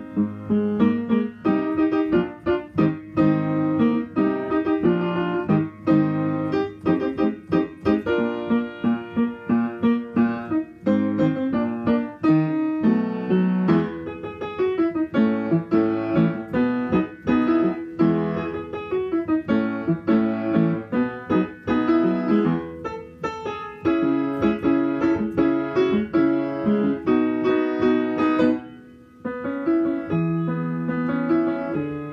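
Solo upright piano playing a medley of songs, with steady chords and a busy melody. The playing pauses briefly about a second and a half before the end, then carries on.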